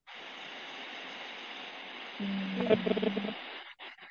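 Steady hiss of an open microphone line on an online call, switching on and off abruptly. About two seconds in, a low steady hum with a faint crackle joins it for about a second.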